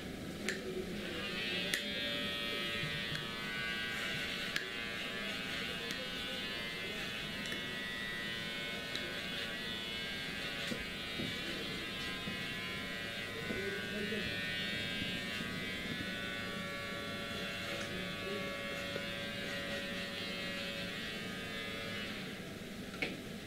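Electric hair clipper buzzing steadily, starting about a second in.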